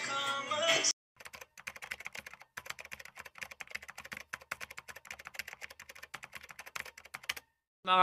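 Keyboard-typing sound effect: a fast, steady run of light key clicks lasting about six seconds, with a brief pause a couple of seconds in. It follows a second of voice over music that cuts off.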